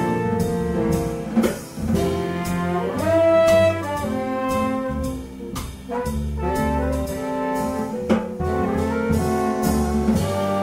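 Jazz ensemble music with several horns playing held notes together and short rising runs, punctuated by a few sharp accents.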